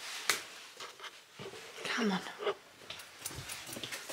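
A dog whimpering softly, among a few short knocks of movement.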